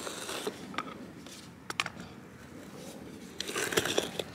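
Metal screw-in tie-out stake being twisted into lawn soil with a wooden dowel through its eye as a lever: faint scraping, with a few light clicks in the first two seconds.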